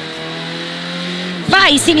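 Renault Clio Williams rally car's 2.0-litre four-cylinder engine running at a steady pitch, heard from inside the cockpit while the car stands at the line. The co-driver's voice starts reading pace notes near the end.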